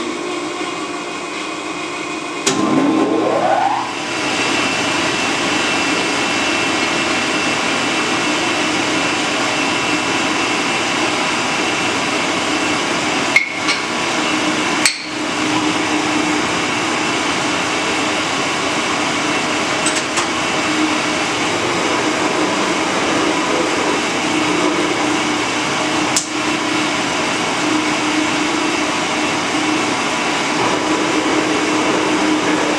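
Metal shaper's electric motor switched on with a click, rising in pitch as it spins up about three seconds in, then running steadily. A few sharp knocks sound over it.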